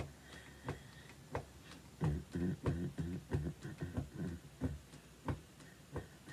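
Quiet music intro: a steady percussive beat with low notes under it, sparse at first, then settling into about three beats a second.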